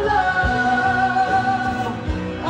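A woman singing karaoke into a microphone over a backing track, holding one long steady note, with a drum hit about halfway through.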